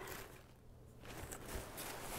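Quiet room tone with a faint steady low hum and a few faint, short rustles from paper being handled.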